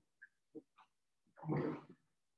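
A man's short grunt about one and a half seconds in, after a few faint brief noises.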